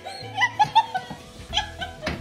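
A dog giving short, high-pitched whining calls over background music, a cluster of them about half a second in and a few more near the end.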